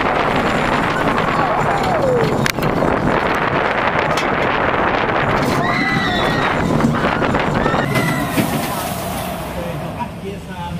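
On-board roller coaster ride: a loud, steady rush of wind and train noise with riders screaming and yelling over it, one long falling yell about two seconds in and more screams around six seconds in. The rush eases off near the end.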